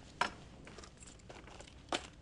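Footsteps of two people walking across a room, with two sharper knocks, one just after the start and one near the end.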